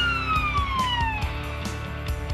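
Fire engine siren sweeping steadily down in pitch and dying away about a second in, over background music with a steady beat.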